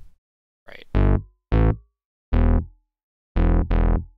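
Playback of a MIDI clip converted from kick-drum audio through a DAW instrument: five short pitched notes at uneven spacing, each dying away quickly. They come out as odd pitched notes of differing lengths rather than a clean drum hit.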